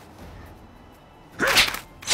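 Fight-scene sound effect: after a quiet stretch, a sudden loud swish of a strike comes about one and a half seconds in, falling in pitch as it ends.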